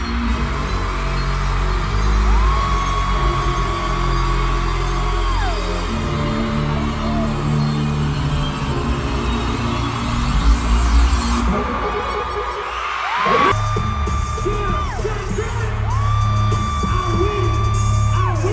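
Live concert music played loud through an arena's sound system, heard through a phone's microphone: steady heavy bass under long held high notes that slide down at their ends, three times. About eleven seconds in a rising sweep builds, the bass cuts out briefly, and the beat comes back.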